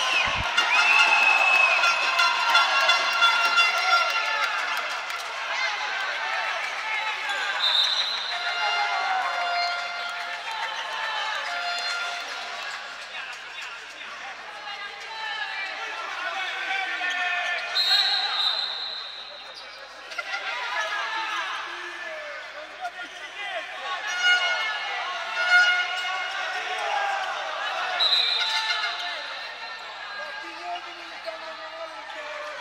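Basketball bouncing on a hardwood court during live play, over the voices of players and spectators in the hall.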